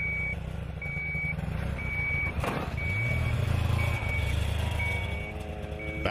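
Electronic beeper sounding a steady high tone about once a second, each beep about half a second long, over the low hum of a running vehicle engine. A single sharp knock comes about halfway through.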